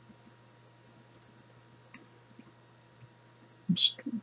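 Faint, scattered keystroke clicks on a computer keyboard as a formula is typed, over a low steady hum.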